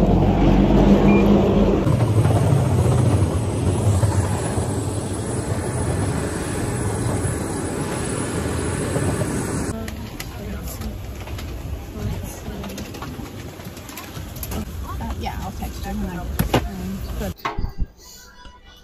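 Loud, steady rumbling noise of aircraft and airport machinery, which cuts off abruptly about ten seconds in. It gives way to quieter aircraft-cabin noise with scattered clicks and faint voices.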